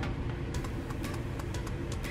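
Scattered light clicks and taps from fingers and fingernails handling a plastic lip palette case, over a steady low room hum.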